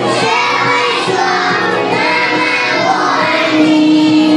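A Mandarin children's song playing, with a group of young children's voices singing the melody together.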